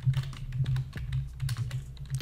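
Typing on a computer keyboard: a quick, uneven run of keystroke clicks, over a low steady hum.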